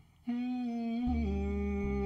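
A man hums a long held note that steps down in pitch about a second in, with a low plucked double bass note coming in under it at the same moment.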